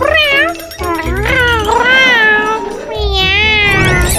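Several drawn-out, wavering meows in a row, the last one rising in pitch near the end. Under them runs background music with a low beat.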